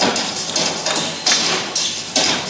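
Staged stunt fight: several thuds and smacks of blows landing and bodies hitting the stage floor.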